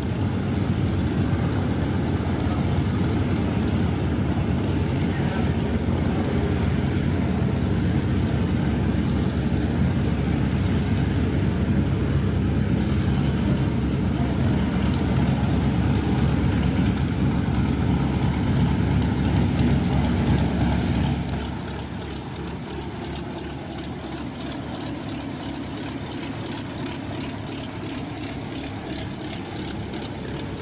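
Yakovlev Yak-9 fighter's liquid-cooled V12 piston engine running as the plane taxis, with a steady propeller beat. Loud for about the first twenty seconds, then it drops to a quieter, even run.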